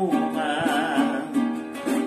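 Venezuelan cuatro strummed in rhythm, playing chords between sung verses, with a brief dip in loudness just before a fresh strum near the end.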